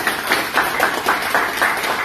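A small group of people clapping their hands in quick, overlapping claps of applause.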